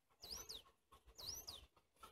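Two short, high bird chirps about a second apart, each a quick sweep up and then down in pitch, over otherwise near-silent background.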